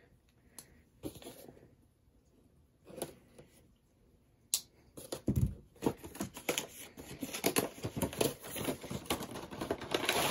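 Cardboard and plastic action-figure packaging being opened by hand: a few faint handling sounds, then from about four and a half seconds in a dense run of quick clicks, crackles and rustles with one dull thump.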